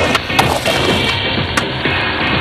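Skateboard clacking and knocking on a concrete curb, with the sharpest clack about half a second in and another about a second later, over background music.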